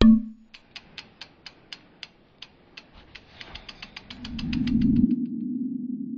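Logo-animation sound effects: a sharp hit, then a run of mechanical ticking clicks at about four a second that speed up. A low swell builds under them, and they stop about five seconds in, giving way to a steady low hum as the logo settles.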